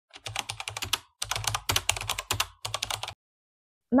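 Computer-keyboard typing sound effect: rapid key clicks in about three quick runs, stopping about three seconds in.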